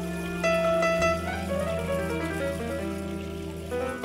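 Live jazz band music: a keyboard plays a line of short, bright notes over sustained low bass notes. The bass note changes about a second in.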